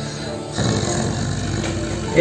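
A man's low, rough growl, like a big cat's, starting about half a second in. It comes from a man in a trance who voices the tiger that his possessing spirit claims to be.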